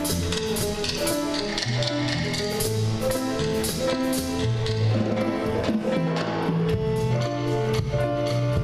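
Live jazz band playing an instrumental intro: piano chords over low bass notes, with a drum kit and hand percussion keeping a steady beat.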